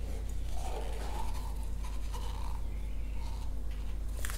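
A paint cup dragged across a wet, paint-covered canvas, a soft uneven scraping, over a steady low hum.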